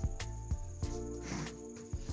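Background music with sustained held notes and a quick, steady ticking percussion beat.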